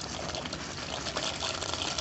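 Tomato broth boiling in an open pressure cooker, bubbling steadily, as dry penne pasta is poured into it.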